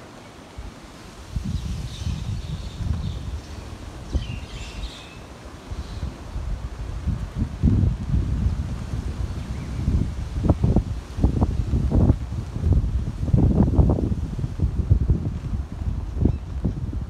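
Wind buffeting the microphone in irregular gusts, a low rumble that grows stronger about halfway through.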